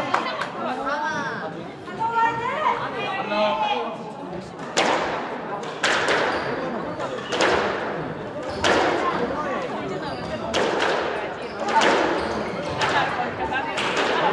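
A squash rally: the ball is hit back and forth, giving sharp racket and wall impacts roughly once a second, each echoing in the enclosed court. Voices are heard for the first few seconds before the hits begin.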